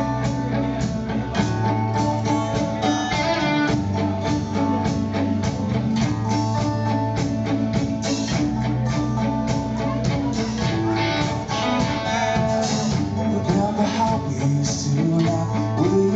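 Live rock band playing the song's instrumental intro: electric guitars and bass guitar over a drum kit keeping a steady beat.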